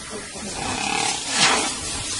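A wild animal calls during a struggle, heard over a steady hiss; the call is loudest about one and a half seconds in.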